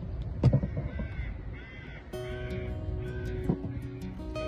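A bird calling four times in short harsh calls, after a sharp knock near the start. About halfway through, background music with long held notes comes in.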